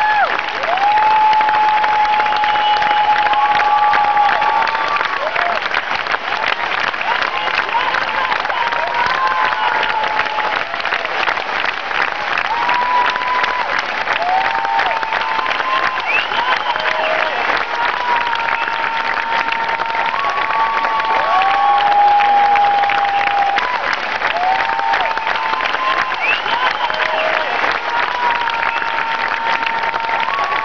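A large concert crowd applauding and cheering without a break: dense clapping with long, held tones from the crowd rising and falling over it.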